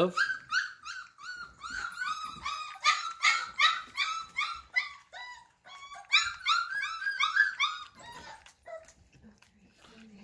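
Bull Terrier puppies whining and yelping in a rapid run of short, high-pitched cries, about four a second, breaking off briefly in the middle and dying away near the end: hungry puppies clamouring at feeding time.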